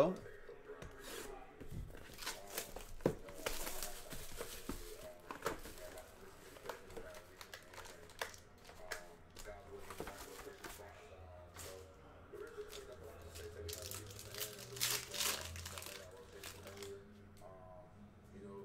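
Plastic wrapping torn and crinkled off a Panini Limited football card box as it is opened, with handling clicks and rustles. The loudest crinkling comes about four seconds in and again around fifteen seconds.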